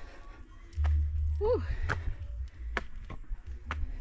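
Footsteps climbing stone stairs, sharp steps about once a second over a steady low rumble.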